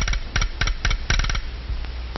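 A quick, uneven run of sharp knocks or clacks, about a dozen in the first second and a half, then quieter.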